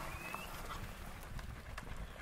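Hooves of a group of Hereford heifers trotting over dry dirt: scattered soft thuds and clicks with no steady rhythm, over a low rumble.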